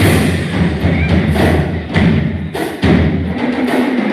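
Drum kit played live, a driving beat of kick drum hits and cymbal crashes over a low bass line.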